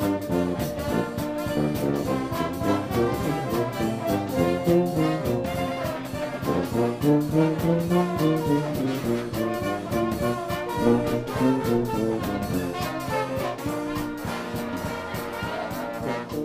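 Live Dixieland-style jazz jam: brass horns, among them trumpet, playing over a steady drum beat.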